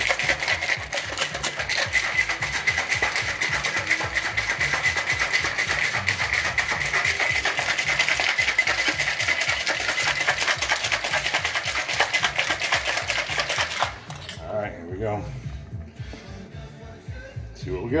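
Metal cocktail shaker being shaken hard, a fast, steady rattle that stops suddenly about fourteen seconds in.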